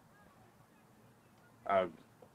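A pause of near silence, then a single short spoken "uh" from a man near the end.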